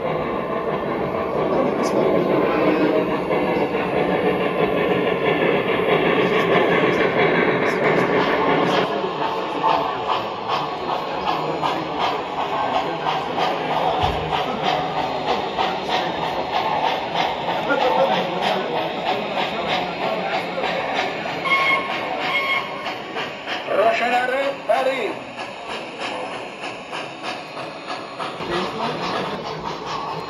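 O gauge model steam locomotives running on three-rail track: an onboard sound system chuffing, with a steady run of regular clicks from the wheels over the track. People talk in the background.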